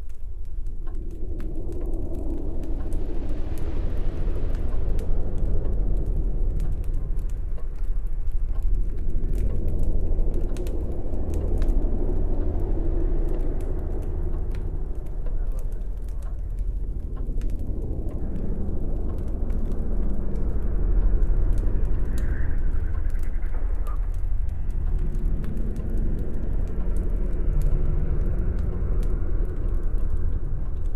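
Low, rumbling suspense drone of a horror film soundtrack, swelling and easing in slow waves, with faint scattered clicks over it.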